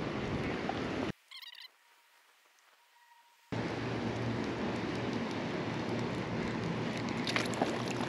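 Baitcasting reel being cranked during a slow lure retrieve: a steady, gritty whirring. The sound cuts to silence about a second in and returns about two and a half seconds later.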